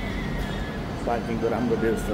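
A voice over background music, with a steady low rumble beneath.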